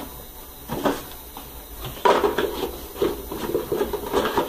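Cardboard tablet box being handled and closed on a desk: light rustling and knocks, with louder handling noise beginning about two seconds in.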